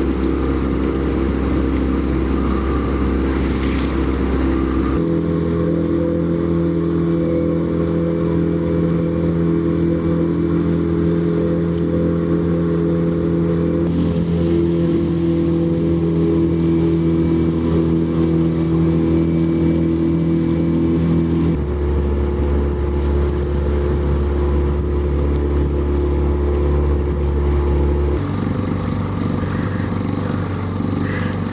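A boat's motor running steadily with a low drone. The drone jumps to a different pitch and level abruptly several times.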